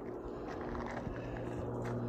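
Steady low drone of a distant engine, with a couple of faint clicks.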